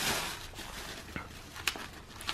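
White tissue paper rustling and crinkling as it is folded back out of a cardboard box, fading away in the first half-second or so, followed by a couple of short crackles.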